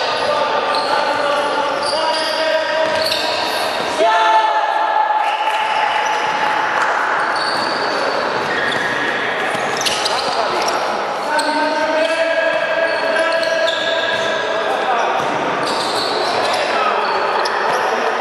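Futsal players shouting and calling to each other in a sports hall, with the ball being kicked and bouncing on the hard court floor.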